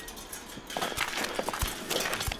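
A fast, irregular run of knocking steps begins about two-thirds of a second in and gets louder: the marching feet of arriving soldiers.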